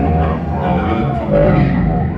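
Live rock band playing continuously, recorded from far back in the audience of a concert hall.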